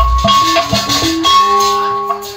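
Sundanese jaipongan gamelan ensemble playing live. Low kendang drum strokes come in the first moment, over held metallophone notes and high, rattling percussion.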